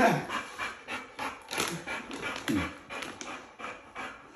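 A dog panting in quick, even breaths, about three a second, while it waits eagerly for a treat.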